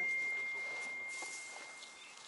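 A single high-pitched pure tone, ringing steadily and slowly fading away.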